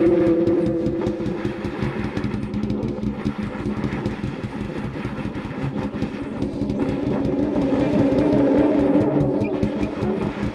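Low saxophone in experimental improvisation, making a rough, noisy, growling sound rather than clean notes. A held note fades in the first second, and a lower held note returns around eight seconds in.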